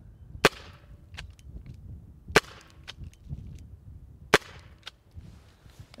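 Three sharp pops from a Byrna CO2-powered less-lethal pistol firing hard compressed-powder training balls into a gas mask's lens at close range, about two seconds apart.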